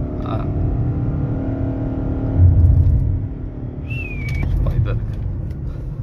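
Lexus NX 300h hybrid's 2.5-litre four-cylinder petrol engine running as the car drives in Sport mode, with the electric-only mode dropped out. Inside the cabin it is heard as a steady engine drone over road rumble. A short high tone sounds about four seconds in.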